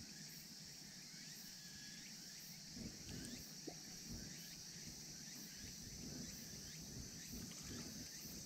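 Faint, steady high-pitched chirring of insects, with a couple of faint light knocks about three seconds in.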